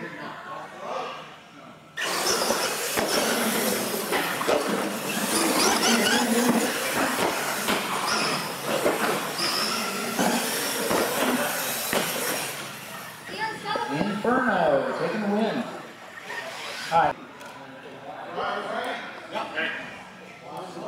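Radio-controlled monster trucks racing side by side on a concrete floor. About two seconds in there is a sudden loud start, then roughly ten seconds of motor and gear whine with tyre noise, which dies down after that.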